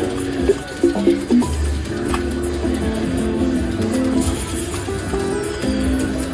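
Goldfish Feeding Time video slot machine playing its game music as the reels spin, a steady run of short melodic notes, with a few louder, sharper notes in the first second and a half.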